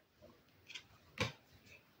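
Faint card handling: a tarot card slid off the top of the deck, with soft ticks and one short tap a little over a second in.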